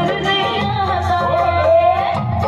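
Live Saraiki song: a woman singing a long, ornamented melodic line into a microphone over amplified instrumental accompaniment with a steady beat, her note rising near the end.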